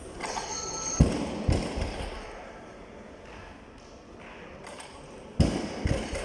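Barbell with bumper plates coming down onto a weightlifting platform: a heavy thud about a second in, followed by a smaller bounce. Two more thuds come near the end.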